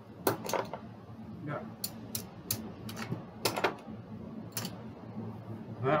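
Casino chips clicking against one another as they are picked up and stacked, about a dozen sharp, irregular clicks.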